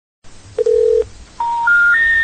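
A short, lower telephone beep, then three rising tones in quick steps: the special information tones that come before a telephone company's recording saying the number is disconnected or no longer in service.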